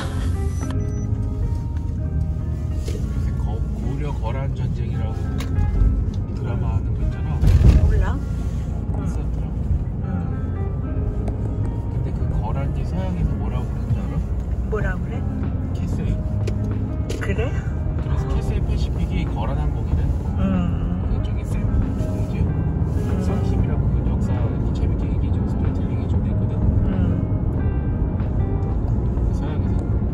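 Inside a moving car's cabin: steady low road and engine rumble, with background music and faint voices over it.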